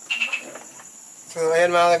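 Crickets chirring faintly and steadily as a thin high-pitched background. Near the end a man's voice comes in loud with a drawn-out vowel.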